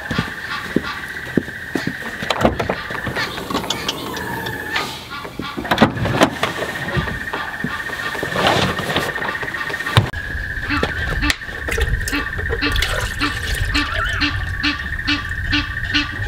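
Egyptian geese honking in a repeated run, strongest in the second half, over other birdsong and a steady high-pitched tone. Knocks and clatter come from the rear door and gear of a 4x4 being handled.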